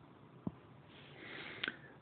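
Faint: a single soft tap, then a short in-breath through the nose or mouth with a small click near its end, taken just before speaking.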